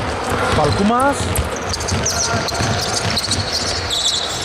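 A basketball being dribbled on a hardwood court, bouncing in repeated low thuds, with sneakers squeaking on the floor from about a second and a half in.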